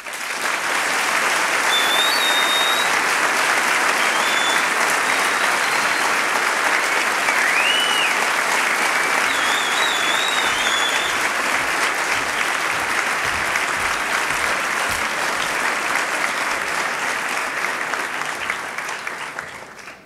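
A concert hall audience applauding, breaking out suddenly as the song ends and holding steady, with a few short high whistles in the first half. The applause fades out near the end.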